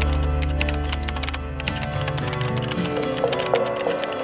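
Background music with sustained low tones, the bass dropping away partway through, over a run of rapid key-click typing sounds.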